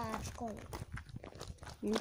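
Footsteps on loose gravel: a run of short, irregular scuffs as someone walks across a pebble yard.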